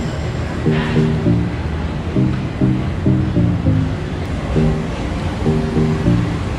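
Background music: a low melody of short, repeated notes in an even rhythm, over a steady rushing noise.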